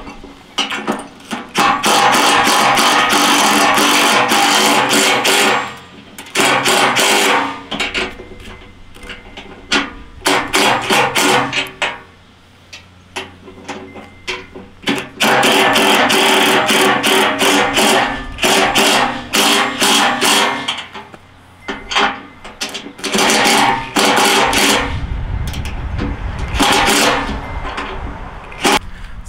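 Cordless impact driver run in several bursts of a few seconds each, the longest about six seconds. It is hammering 18 mm nylon lock nuts tight with a rapid rattle of impacts over a steady motor whine.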